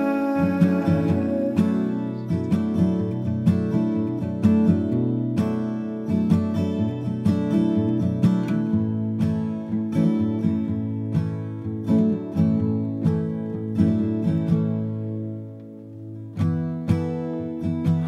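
Acoustic guitar playing an instrumental passage of a song, plucked and strummed chords, easing off briefly near the end before picking up again.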